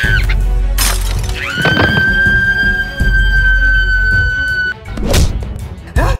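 Edited comedy sound effects over background music: a sudden crash-like hit about a second in, then a high held tone that rises into place and stays steady for about three seconds, and another hit near the end.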